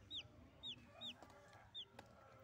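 Two-week-old chicks peeping faintly: about four short, high chirps that each slide downward in pitch.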